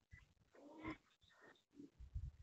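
A faint animal call, pitched and lasting about half a second, shortly before the middle, followed by a shorter, fainter one.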